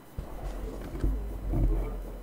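Low rumble with a couple of soft knocks, over faint murmuring voices.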